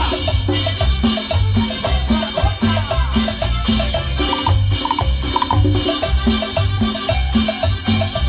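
Live cumbia band playing an instrumental passage: drums and cymbal keeping a steady dance beat under a repeating bass line, with short, bright accordion phrases on top.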